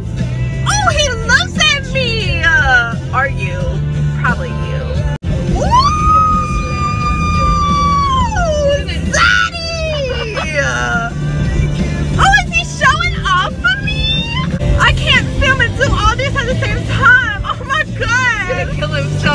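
Two women squealing, shrieking and laughing excitedly inside a car, with one long high squeal that falls away at its end about six seconds in. Music and a steady low rumble run underneath.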